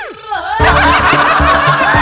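Loud laughter over a comic music cue with a steady beat, starting about half a second in after a brief falling pitch glide.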